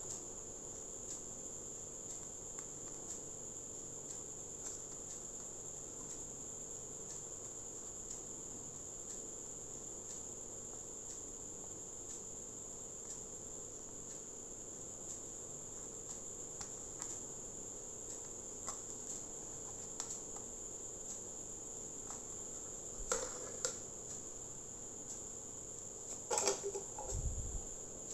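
Faint, steady high-pitched chirring of crickets, with light clicks and taps from a plastic CD jewel case being handled and a small cluster of clicks near the end.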